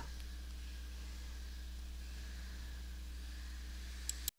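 Steady low electrical hum with faint hiss, unchanging throughout. No hammer blows are heard.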